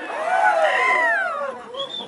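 A single high-pitched wailing cry that rises and then falls in pitch over about a second, followed by a brief, shorter high squeak near the end.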